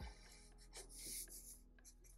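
Faint scratching of a marker pen tip stroking across paper, drawing short fur lines, with the strongest strokes about a second in.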